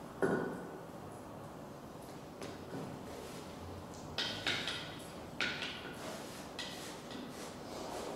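Small hard objects being handled and set down on a hard floor: a sharp knock just after the start, lighter taps, then a quick cluster of clinks and knocks about four to five and a half seconds in, some followed by a brief ringing tone.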